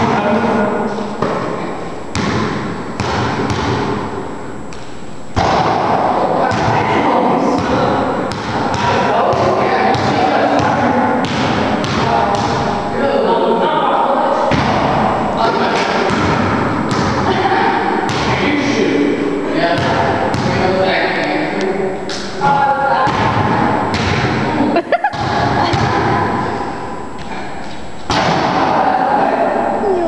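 A basketball bouncing and thudding on an indoor court floor, irregular thumps throughout, with people's voices talking and calling out over them.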